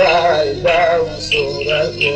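A Kurdish song: a man sings a wavering vocal line over instrumental accompaniment.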